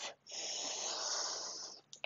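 A person's long, deep inhale held in a yoga pose, a steady hiss lasting about a second and a half.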